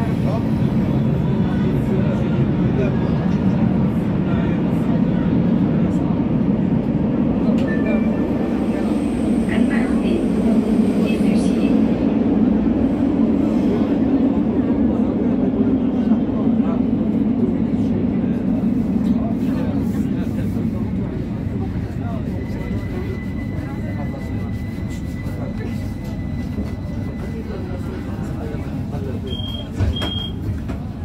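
Metro train car running between stations, heard from inside the car: a steady low rumble that eases off over the last ten seconds as the train slows into a station. Two short high beeps sound near the end.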